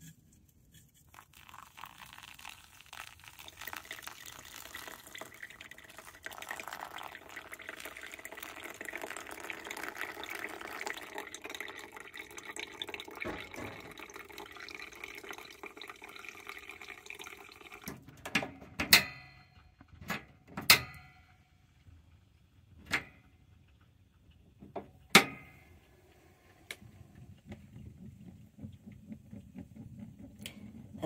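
Pour-over coffee brewing: hot water trickling steadily through coffee grounds in a paper filter cone for about 17 seconds. Then the flow stops and a few sharp clicks follow, several seconds apart.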